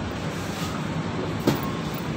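Steady low rumbling background noise of a supermarket floor, with one sharp knock about one and a half seconds in.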